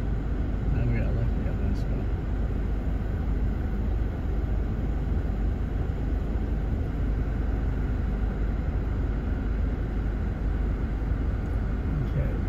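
Steady low rumble of an idling vehicle engine, held at a constant level.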